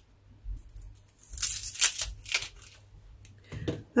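Dry outer skin being peeled off a red onion by hand: a run of short papery crackling rips, busiest in the middle, with a few lighter ones around them.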